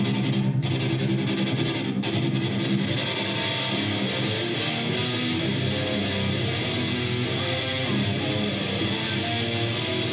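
Electric guitar playing the opening of a rock song live, a steady run of picked notes with some distortion.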